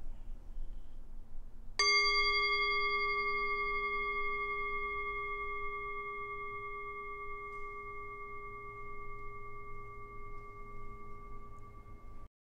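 Metal singing bowl struck once about two seconds in, then ringing on with a steady low tone and brighter higher overtones, slowly fading.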